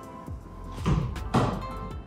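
Background music, with two soft thuds about a second in as a foot pulls back over a football and digs under it, flicking it up off a tiled floor.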